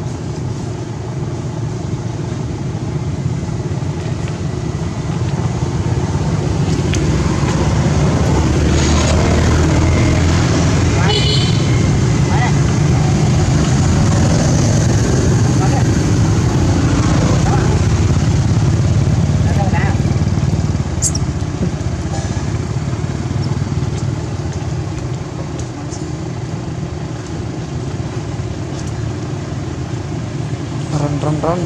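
Low engine rumble of a motor vehicle running, growing louder over the first half and then easing off, with people's voices faintly in the background.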